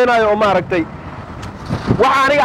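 A man talking in a loud voice, breaking off a little under a second in. Street traffic noise fills the short pause before he speaks again.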